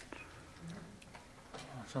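A lull in a quiet meeting room: a faint, brief murmur of voice and a few small clicks.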